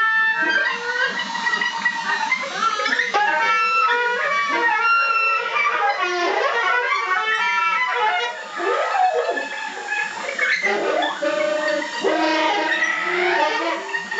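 Experimental improvised music: a small handheld vessel-shaped wind instrument blown in wavering, broken tones, layered with other sounds that swoop steeply up and down in pitch several times.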